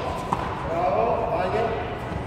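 High-pitched children's voices calling out during tennis practice, with a single sharp tennis-ball impact about a third of a second in.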